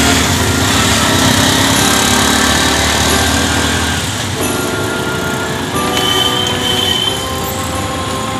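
Loud, steady street-traffic noise heard from a moving vehicle, with sustained tones of different pitches coming and going over it.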